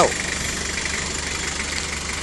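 Toyota Hilux 2.4 turbodiesel engine idling steadily.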